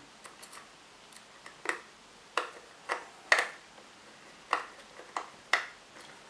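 Small screwdriver working the battery-cover screw on the plastic back of a DT-9205A multimeter: a series of light, irregular clicks as the blade seats and turns in the screw head, about eight in all, the loudest a little past the middle.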